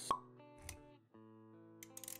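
Short motion-graphics intro music with sustained synth-like notes, punctuated by a sharp pop sound effect right at the start and a low thud a little later. The music cuts out briefly about a second in, then the held notes come back.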